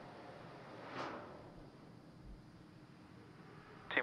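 Faint steady hiss of launch-pad ambience around a venting Falcon 9 rocket before engine ignition, swelling briefly into a soft whoosh about a second in.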